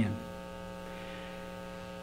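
Steady electrical mains hum, a buzz of many fixed tones, with no change through the pause.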